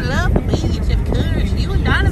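A dog whining in high, sliding whimpers, one at the start and another near the end, over the steady low rumble of the car on the road, heard inside the cabin.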